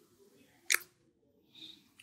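A single sharp click a little under a second in, followed by a faint short hiss.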